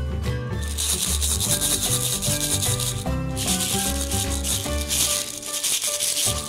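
Background music with a loud, scratchy rubbing noise over it in two long stretches, the first starting about half a second in and the second about three seconds in: a cardboard cutout handled and rubbed close to the microphone.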